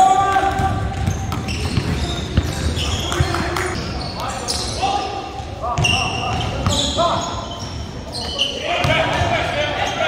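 Basketball bouncing on a hardwood gym floor during a pickup game, with players' voices and calls echoing in the large hall.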